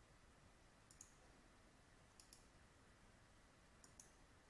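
Near silence with three faint computer mouse clicks, each a quick double tick, spaced about a second and a half apart.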